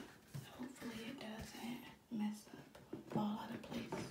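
Quiet speech: a woman talking softly under her breath in several short, broken phrases.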